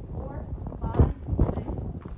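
A voice that cannot be made out, with two short knocks about a second in, less than half a second apart.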